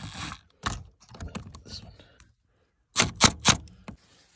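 Milwaukee Fuel brushless cordless driver tightening the hose clamp on a rubber pipe coupling: a brief high motor whir at the start, then scattered clicks and a few loud knocks about three seconds in.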